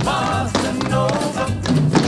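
Upbeat Latin-tinged rock-and-roll band music with a bossa nova beat, in an instrumental passage between sung lines, with hand percussion and a melodic riff.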